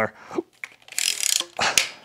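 Telescopic metal wand of a Bosch canister vacuum being pulled out, its tube sliding with a rasping, clicking sound through the adjuster's notches. The sound comes in two short bursts, the first about a second in. The wand is new and being extended for the first time.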